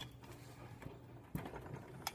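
Mostly quiet, with a faint steady hum and one sharp metal click from a hand tool on the engine's cylinder head about a second and a half in.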